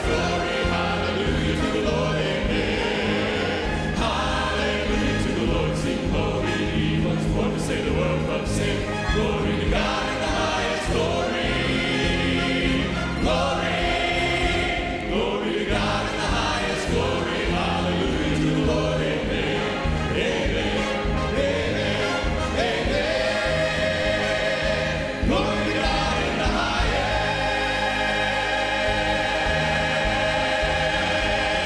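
Church choir and male vocal soloists singing a Christmas gospel song with live instrumental accompaniment, the soloists singing into handheld microphones.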